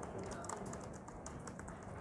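Typing on a computer keyboard: a quick, uneven run of light key clicks as a short phrase is typed.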